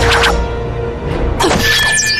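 Fight-scene music with added sound effects: a hit right at the start, then a sudden sharp sword swish about one and a half seconds in, followed by a high ringing tone.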